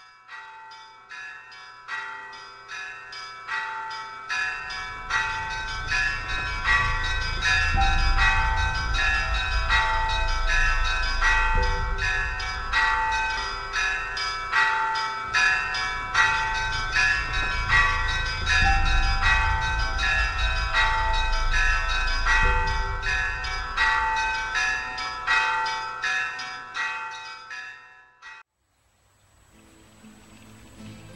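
Bells ringing in a fast, even stream of strikes, several notes repeating, over a low rumble; the ringing stops abruptly near the end.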